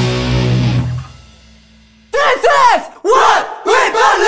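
Hardcore punk band's amplified chord ringing out and dropping away about a second in. After a short near-quiet break, loud shouted vocals come in three bursts.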